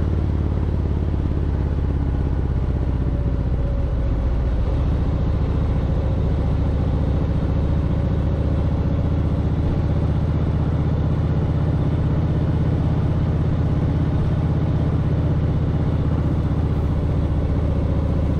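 Motorcycle's V-twin engine running at a steady cruise, a low, even drone with road and wind noise, heard from the rider's seat behind the windshield.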